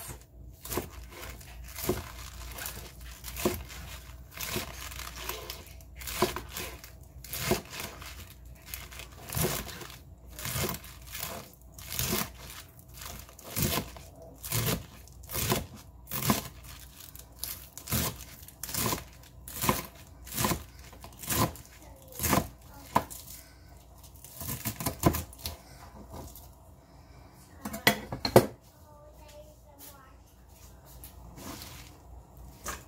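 Chef's knife chopping fresh spinach on a plastic cutting board, about one cut a second, each stroke a crisp slice through the leaves ending in a knock of the blade on the board. The cuts thin out in the last few seconds.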